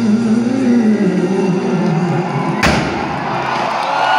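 Live band music played loud over a concert PA, heard from within the crowd, with a single sharp blast about two and a half seconds in as the stage confetti cannons fire.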